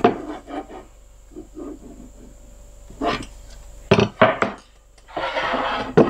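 Thick black walnut boards being handled on a table: a few wooden knocks as slabs are set down against one another, about three and four seconds in, then a board scraping across another near the end.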